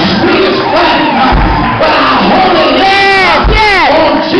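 A preacher whooping, chanting the sermon in drawn-out sung cries through a microphone, with a congregation calling back and music underneath. About three seconds in, one long cry falls steeply in pitch.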